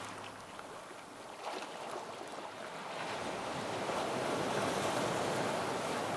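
A rushing noise like surf, with no musical notes, growing louder over the first few seconds and then holding.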